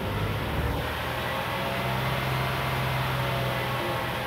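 A 2002 Nissan Frontier engine running steadily at idle, a low even hum.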